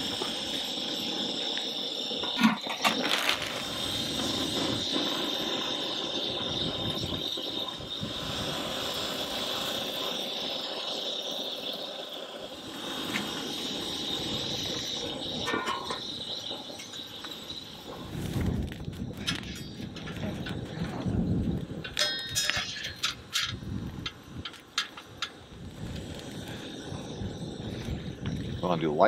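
Propane burner under a Skottle cooking disc hissing steadily, with metal clanks from its lid and spatula about two to three seconds in. Past the middle the hiss fades behind low gusts of wind on the microphone, with scattered clicks and knocks of handling.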